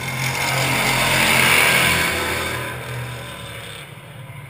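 Stock cars racing past on the oval, their engines growing louder to a peak about a second and a half in and then fading as they go by.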